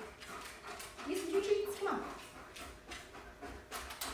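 Dog panting in quick breaths, with a drawn-out whine about a second in that slides down in pitch near the two-second mark.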